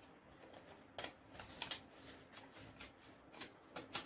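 Scissors cutting through a paper pattern piece in a string of short, faint snips that begin about a second in.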